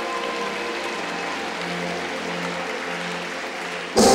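Audience applauding steadily, with faint music underneath.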